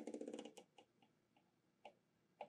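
A fast run of small mechanical clicks lasting about half a second, then a few scattered single clicks, as the coil-current control on the power supply is turned down.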